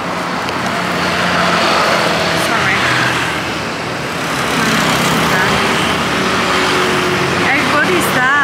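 Street traffic: motorbikes and cars passing, with a steady engine hum over road noise.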